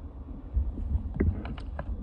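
Wind rumbling on the microphone, with a few light clicks and ticks in the second half.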